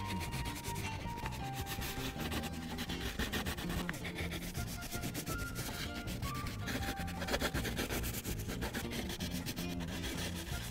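Crayola wax crayon rubbing on a paper coloring page in fast, continuous back-and-forth strokes, with a simple background music melody under it.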